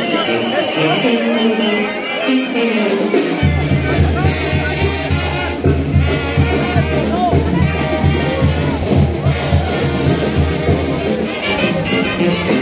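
Brass band music playing, with a low, pulsing bass beat coming in about three seconds in, over the voices of a crowd.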